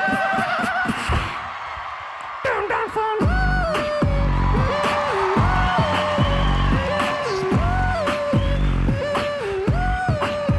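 A four-man vocal beatbox group performing. It opens with a falling vocal glide and has a short quieter stretch. From about three seconds in, a deep mouth kick drum lands about twice a second under a sliding vocal bass line and other vocal effects.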